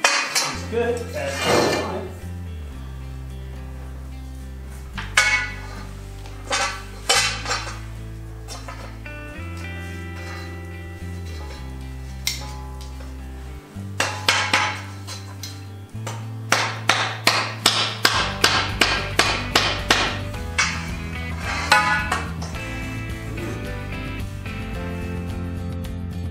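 Rubber mallet tapping aluminum T-slot extrusions and their joints together: scattered single strikes, then a quick run of about three taps a second near the end. Background music with a bass line plays throughout.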